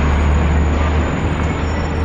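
City street traffic: passing vehicles on a downtown road, heard as a steady low rumble under an even wash of road noise.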